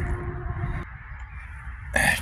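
Outdoor ambience: a low rumble on the microphone, with a faint steady tone that stops a little under a second in.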